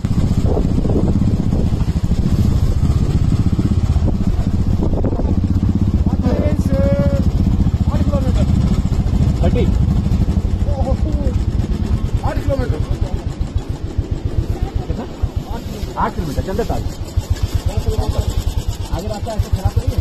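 Royal Enfield Bullet's single-cylinder engine running under way, then dropping to a slower idle thump about two-thirds of the way through as the bike comes to a stop. Voices speak briefly over it now and then.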